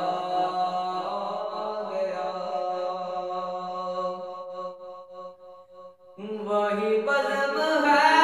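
A man's unaccompanied voice sings a devotional Urdu kalaam in long held, drawn-out notes. The note dies away about five seconds in, and a new held note begins about a second later, growing louder.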